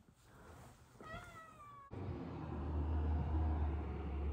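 Domestic cat giving one short meow, a little cry, about a second in, cut off abruptly. A low steady rumble follows.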